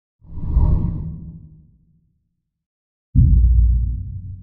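Logo intro sound effect: a whoosh that swells and fades out over about a second and a half, then near silence, then a sudden deep, loud low hit about three seconds in that rings on.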